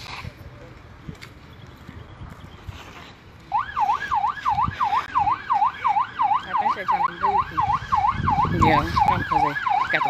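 Emergency vehicle siren in a fast yelp, its pitch sweeping up and down about four times a second. It starts suddenly about three and a half seconds in, loud against the quieter street before it.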